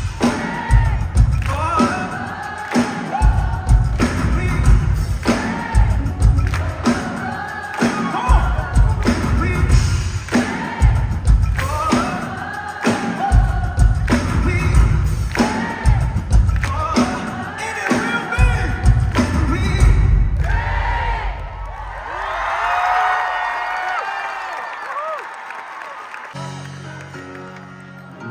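Live band music with a lead singer, heard from the audience in a concert hall: a heavy kick-drum beat under the singing until about two-thirds of the way through, when the drums drop out and voices carry on over held chords. Near the end a new plucked keyboard pattern begins.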